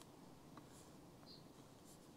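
Near silence: room tone, with a faint click about a second in.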